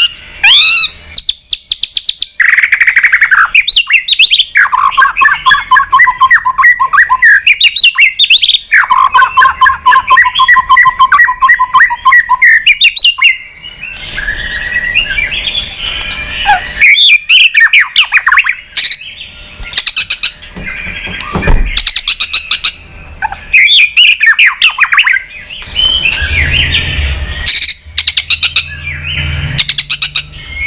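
A caged white-rumped shama singing a loud, varied song. Two long runs of rapid repeated notes come in the first half, and sharp clicking calls broken by short whistled phrases fill the second half.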